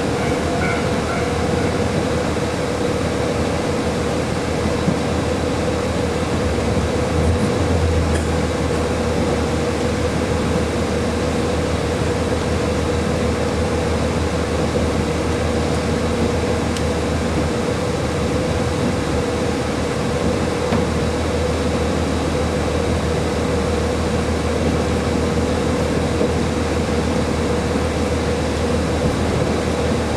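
Interior of a KiHa 40 series diesel railcar under way: steady running noise from the engine and the wheels on the track, with a steady hum that holds one pitch throughout and a low rumble that swells a few times.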